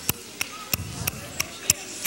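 Church service in a praise break: sharp percussive hits on a steady fast beat, about three a second, with voices shouting and calling out underneath.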